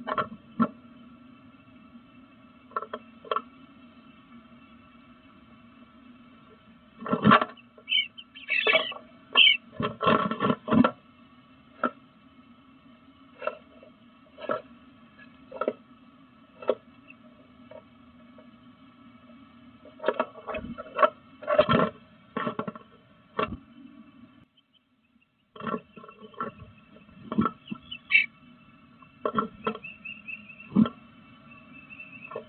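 Male eastern bluebird's feet scratching and knocking on the wooden floor and walls inside a small nest box, in scattered clusters of knocks, with a few short high chirps about eight to ten seconds in and again near the end. A steady electronic hum runs underneath.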